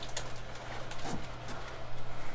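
Quiet room tone with a steady low electrical hum and a few faint clicks. A brief low sound comes about halfway through.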